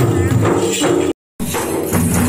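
Folk drumming from two-headed barrel drums beaten in a fast, even rhythm, with jingling percussion over it. The sound drops out completely for a moment a little over a second in, then the drumming resumes.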